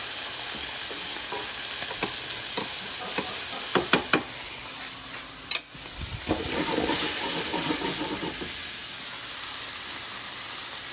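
Grenadier fillets frying in melted butter in a stainless steel pan: a steady sizzle. A few sharp clicks come through about two to four seconds in.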